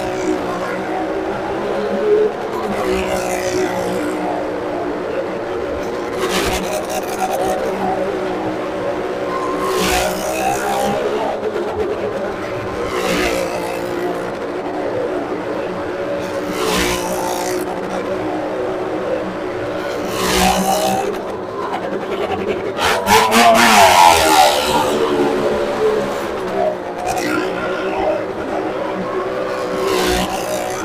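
A motorcycle engine running hard as the bike laps the wooden wall of a well of death. Its sound swells each time it passes close, about every three and a half seconds, and is loudest near the end.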